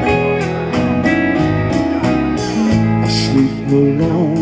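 Live soft-rock band playing a passage between sung lines: the drum kit keeps a steady beat under sustained guitar, bass and keyboard notes.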